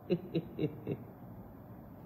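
A woman's short, breathy laugh: four quick voiced pulses in the first second, then quiet room tone.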